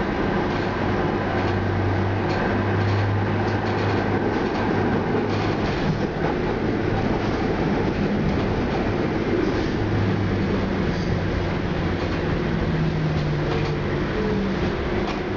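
Manchester Metrolink tram running on the rails, heard from inside the cab: a steady rumble with a humming motor tone and light clicks from the wheels. Near the end the hum changes and drops slightly in pitch as the tram slows into a station.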